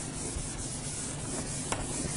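A whiteboard being wiped clean: a steady rubbing across the board's surface.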